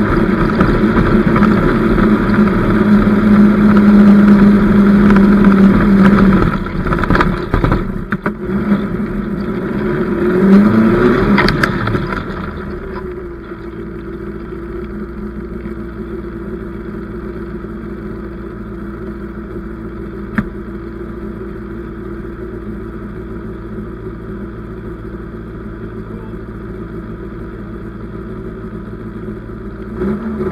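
Austin 7 Sports Special's small side-valve four-cylinder engine running hard at steady revs for about six seconds. The revs then drop and surge unevenly, rising and falling once more around ten to twelve seconds in, before it settles to a steady, quieter idle for the rest.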